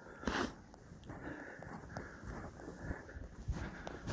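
Quiet crunching and rustling of footsteps through deep snow, with a short breathy burst about a quarter of a second in.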